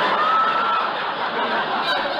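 Studio audience laughing at a punchline: many voices together, loud and sustained, with a few higher individual laughs standing out. Heard on an old 1949 radio transcription with the highs cut off.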